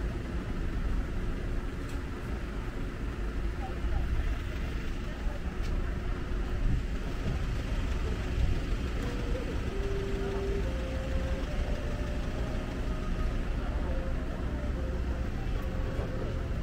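City street ambience: steady traffic noise with people's voices in the background, and a few short held tones in the second half.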